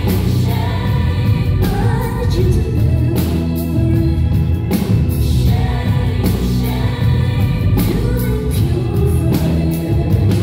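Live band music, loud and steady: a woman singing over keyboards, heavy bass and drums.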